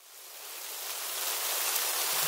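Steady rain, a rain sound effect, fading in from silence over about the first second.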